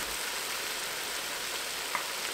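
Seared beef and carrots sizzling steadily in the still-hot inner pot of a Ninja Foodi pressure cooker, its sear setting just switched off.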